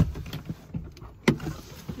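Knocks and rustling of someone moving about inside a car as they get out, with a thump at the start and one sharp click a little over a second in.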